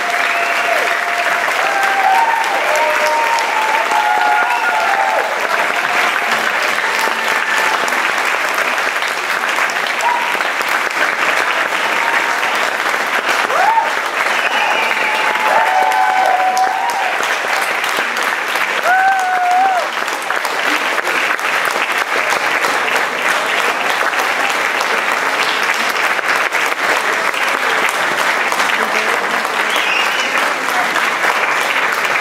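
Audience applauding steadily, with scattered voices cheering and calling out over the clapping.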